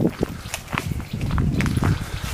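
Footsteps walking on a woodland path, a few irregular short crunches and taps over a low rumble.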